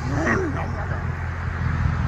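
Ford Mustang Mach 1's 5.0-litre V8 idling with a steady low rumble from its quad exhaust, the active exhaust valves closed.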